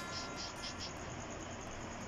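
Insects chirping faintly in the background: a quick run of short high chirps in the first half, over a steady low hiss.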